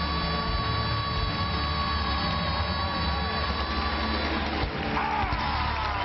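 A young girl's solo pop singing voice holding one long, steady note over band backing, then sliding down in pitch near the end.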